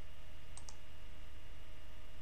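Two faint computer mouse clicks close together about half a second in, over a steady low electrical hum.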